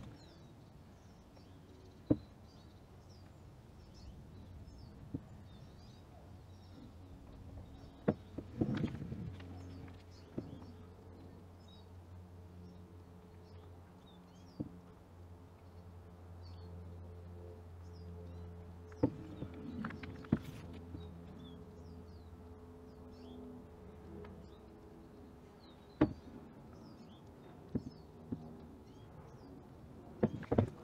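Faint outdoor ambience with small birds chirping throughout, a low steady hum through the middle stretch, and a few sharp knocks from the wet canvas being handled and tilted.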